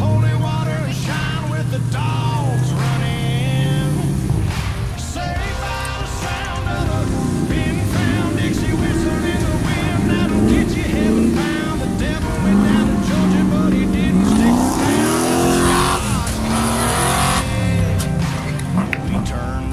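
An off-road 4x4's engine running, then revving in rising surges near the end as it climbs, with spectators' voices.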